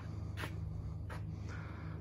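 A quiet pause with a steady low hum and two faint, short breaths, about half a second and a second in.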